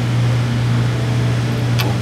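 A steady low hum over a hiss of background noise.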